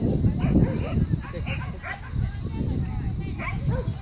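A dog barking repeatedly in short barks.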